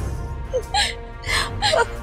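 A woman whimpering and gasping in pain: three or four short, breathy cries over steady background music.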